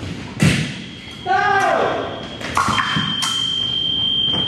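Fencing bout on a wooden floor: a loud thud about half a second in, a fencer's short shout about a second later, then the electronic scoring machine's high steady tone sounding for about a second as a touch registers.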